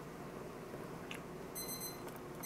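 An electronic alarm going off: a single high-pitched beep about half a second long starts near the end, after a stretch of quiet room sound.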